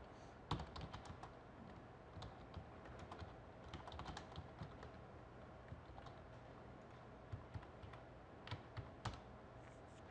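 Faint typing on a computer keyboard: scattered key clicks in short, irregular runs with pauses between them.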